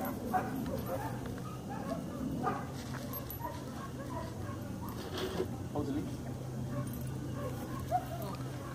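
German Shepherd puppy about 12 weeks old making short, scattered high calls as she bites and tugs a rag, some of them rising in pitch. A low steady hum runs underneath.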